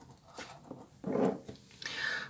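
Faint handling sounds: a small cardboard perfume box set down on a wooden tabletop, a few soft taps and rustles.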